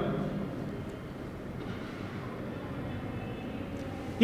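Steady low background rumble of room noise in a classroom, with no voice and no distinct strokes.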